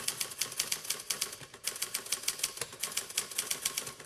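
Typewriter keystroke sound effect: a rapid, even run of key clacks, about eight a second, typing out a caption.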